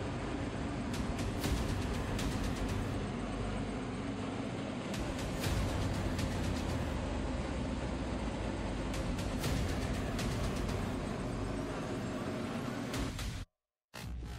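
Garmiran GNG 90/5 forced-draught gas burner firing with its fan running: a steady roar with a low hum, under background music. It stops abruptly near the end.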